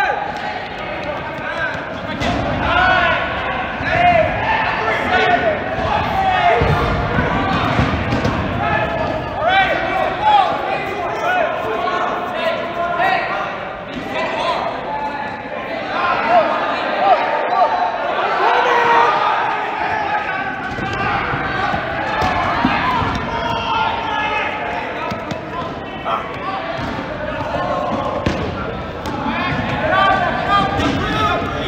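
Live dodgeball rally in a large gym: players calling and shouting to each other, with repeated thuds of rubber balls being thrown, hitting and bouncing on the hard court floor, all echoing in the hall.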